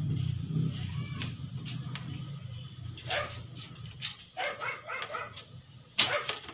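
Small dog shut in a plastic pet carrier, barking and yipping in short scattered bursts with a quicker run of yips in the second half, over a steady low hum.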